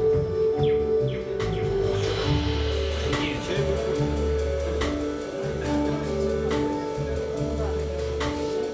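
A live band playing: held keyboard and synthesizer chords over electric bass notes and drums, with occasional cymbal strokes.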